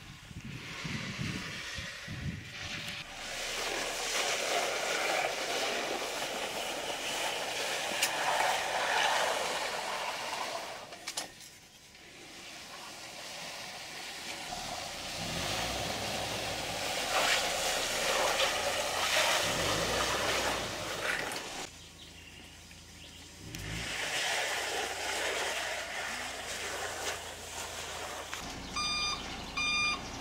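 Steady noise of a concrete road-building site with a truck running, broken by two short lulls. Near the end a concrete mixer truck's reversing alarm starts beeping in a regular rhythm.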